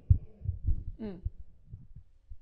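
Irregular low, dull thumps from a handheld microphone carried while its holder walks: handling and footstep noise through the mic. A short murmured 'mm' comes about a second in.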